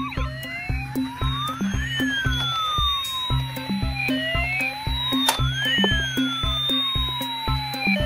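Toy police car's electronic wail siren, two tones sweeping up and down against each other in slow cycles of about four seconds, over music with a steady beat. There is a single sharp click about two-thirds of the way through.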